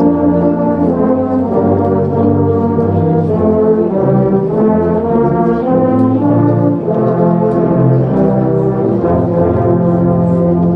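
Massed tubas, sousaphones and euphoniums playing a Christmas carol in full harmony, sustained chords moving from one to the next about every second.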